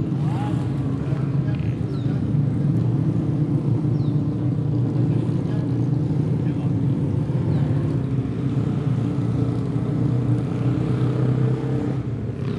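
A motor vehicle engine idling, a steady low drone.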